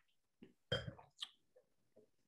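Someone nosing wine from a glass close to the microphone: a few short sniffs, the loudest about three quarters of a second in, followed by a thinner, hissier one.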